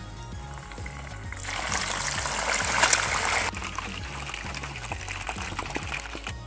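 Oven-roasted pork belly pieces frying in very hot fat: a loud hissing sizzle begins about a second and a half in, peaks, then drops back at about three and a half seconds to a softer, steady sizzle. Background music plays throughout.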